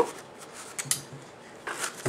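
An elastic shell-carrier sleeve rubbing and clicking as it is slid along a shotgun's synthetic buttstock, with a few small clicks and one sharper click a little before a second in.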